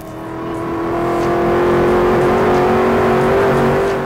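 Supercharged 5.0-litre V8 of a Ford Mustang RTR drift car running flat out at about 150 mph, heard from inside the cabin. It grows louder over the first two seconds, then holds, its note climbing slowly as the car keeps accelerating.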